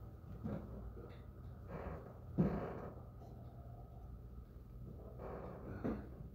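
Quiet room with a low steady hum and a few faint knocks and rustles, the sharpest knock about two and a half seconds in.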